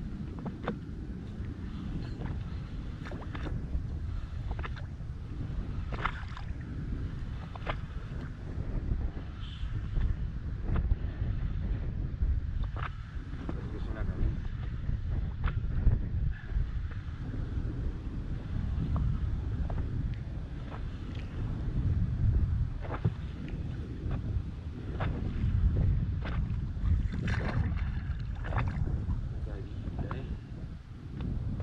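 Wind buffeting the microphone in a strong, uneven low rumble, with scattered short sharp clicks and knocks over it.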